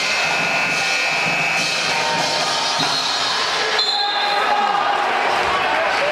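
Crowd noise filling a basketball gymnasium, with long steady tones held over it that change pitch twice.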